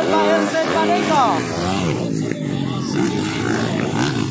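Motocross bikes' engines revving and accelerating over the jumps, one engine's pitch sweeping up sharply about a second in, then several engines running together in a mixed drone.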